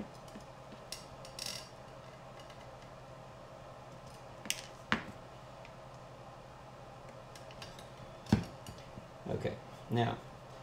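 Hex driver working the small motor screws out of an FPV drone's carbon fiber arm: scattered light metallic clicks and clinks, the sharpest about eight seconds in.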